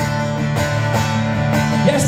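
Live solo guitar strummed through a venue PA, a steady chord pattern with a stroke about every half second.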